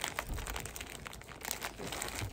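Plastic bag crinkling and rustling in irregular crackles as items are handled and pulled out of it.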